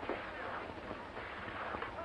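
Quiet soundtrack background: a steady low rumble and hiss with faint, indistinct voices.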